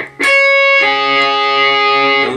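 Electric guitar picking the high E and B strings, barred at the 10th fret: one note is struck first, then just under a second in both strings are picked and left ringing together.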